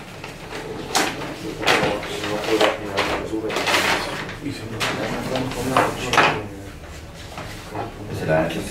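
Paper rustling: sheets being pulled out of a large manila envelope and handled, in a string of short swishes, the longest about three to four seconds in.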